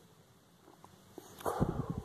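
A pet cat at play with a hand on the floor, close to the microphone. Faint soft clicks, then near the end a brief louder burst of low, scuffling sound from the cat and the hand.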